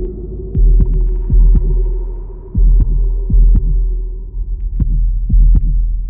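Background soundtrack of deep thumps, mostly in pairs like a heartbeat, over a steady low droning hum.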